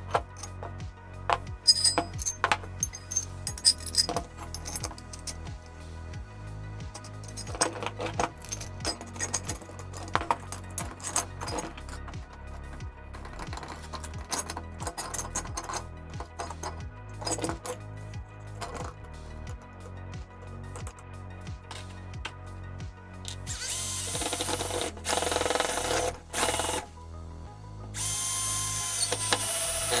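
Steel clamp parts, bolts, washers and nuts clinking and knocking as they are fitted together, over background music. Near the end a cordless drill runs in two bursts, about three seconds and then two seconds long.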